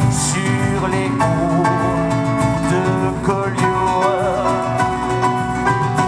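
Live band music from acoustic guitar, keyboard, double bass and drum kit, with a singer's wavering held notes about half a second in and again about four seconds in.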